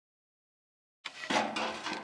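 Dead silence for about the first second, then a second of clattering, rustling noise.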